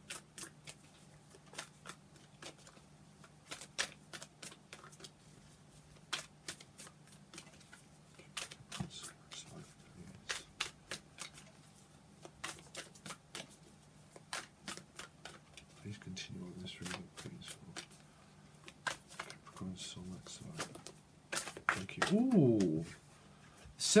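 A deck of tarot cards being shuffled by hand: a run of quick, irregular card clicks and slaps, over a faint steady low hum.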